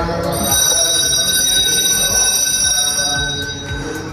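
Temple bells ringing steadily, their high tones held without a break.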